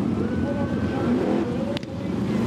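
A pack of sprint cars' V8 engines running together at low speed in formation, a dense steady rumble. A single sharp crack near the end.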